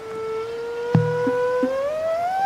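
A held, pitched tone from the soundtrack that begins to slide upward in pitch in the second half, with one sharp hit about a second in: a rising comedic effect leading into dance music.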